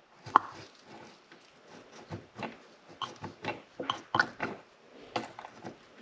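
Hand pump on a can of West System 206 epoxy hardener being pressed to dispense one metered stroke into a plastic cup: a string of short, irregular clicks and small noises from the pump and cup, the sharpest about a third of a second in.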